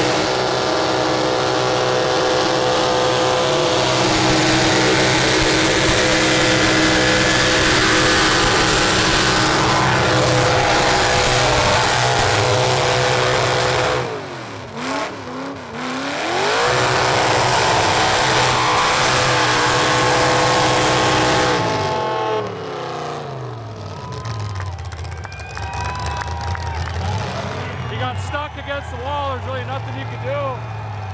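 Burnout car's engine held at high revs while its tyres spin and smoke, a loud steady drone with tyre noise over it. About 14 s in the revs dip and climb back up. Near 22 s the engine winds down to idle and the tyre noise stops.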